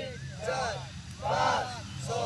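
Male voices shouting short calls in a steady rhythm, about one every 0.8 seconds, some by one voice and some by many together, keeping time for a mass PT drill exercise.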